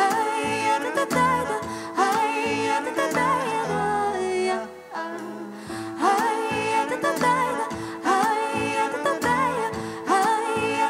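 Live blues-folk band playing, with electric bass, stage piano and drums under a wavering melody line. The band thins out and drops in level briefly about halfway through, then comes back in at full level.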